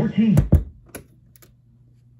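BSR record changer in a Sears Silvertone stereo console: loud low thumps through the speakers in the first half second as the stylus leaves a finished 45 and the changer cycles, then two faint clicks and a low steady hum from the amplifier.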